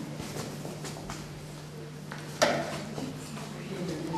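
Uncapping knife scraping the wax cappings off a honey frame in short, faint rasping strokes, with one sharp knock about two and a half seconds in.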